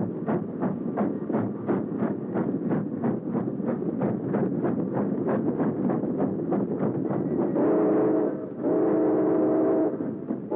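Steam locomotive exhaust chuffing in an even beat of about three a second as the engine moves off. Near the end its multi-note chime whistle sounds two blasts, the second one longer.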